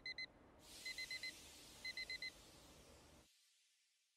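Digital alarm clock beeping in quick groups of four short, high beeps, about one group a second, over a faint hiss. The beeping stops after three groups and the last second is near silent.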